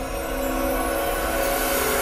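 Dramatic music score with sustained held chords under a steadily building rushing noise, a swelling sound effect.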